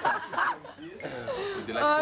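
A man chuckling and laughing, mixed with bits of talk.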